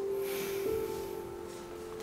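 Quiet ambient background music: soft sustained notes, one held tone stepping to a new pitch a little way in.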